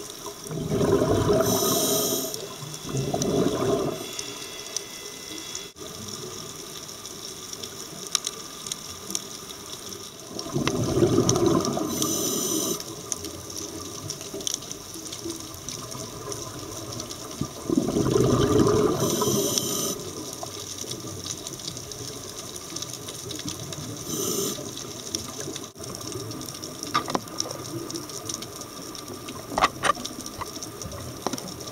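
Scuba diver breathing through a regulator underwater: bursts of exhaled bubbles lasting one to three seconds, several seconds apart, some with a brief hiss of the regulator, over a steady underwater hiss.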